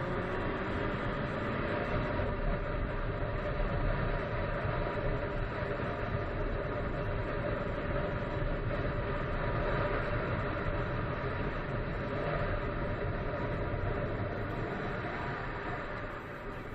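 Motorcycle engine running steadily at cruising speed, with wind and road rumble on the bike-mounted microphone.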